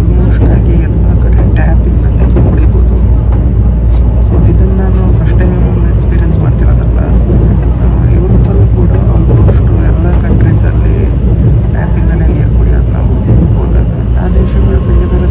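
Steady low rumble of a Tobu Spacia express train running at speed, heard from inside the passenger cabin. A voice speaks at times over it.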